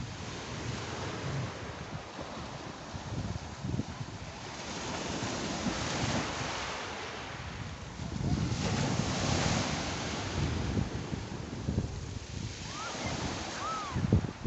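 Sea waves washing up and running back over a pebble beach, a steady hiss of surf that swells twice as larger waves break and rush up the stones.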